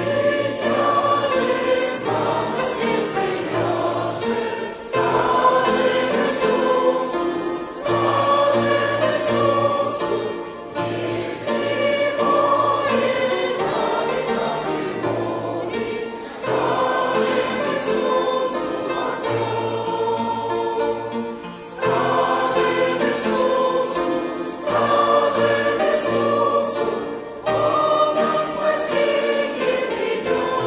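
A congregation and choir singing a hymn together, many voices at once, phrase by phrase with brief dips between the lines.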